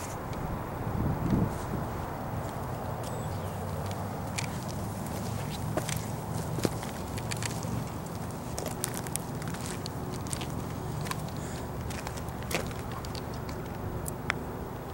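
Footsteps on a gritty rock trail: scattered crunching clicks, thickest in the middle and later part, over a steady low rumble.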